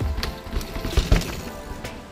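Marin Alpine Trail 8 full-suspension mountain bike clattering and rumbling over rocks as it passes, with sharp knocks a little after one second. Background music plays throughout.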